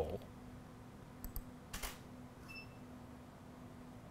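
Two small clicks of a computer mouse, then a Canon DSLR's shutter fires once as it is triggered remotely from tethering software, followed by a short faint beep. A steady low hum runs underneath.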